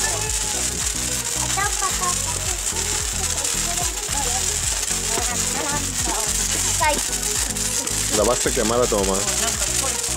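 Handheld sparklers fizzing with a steady high hiss, under background music. Voices can be heard, with a burst of them near the end.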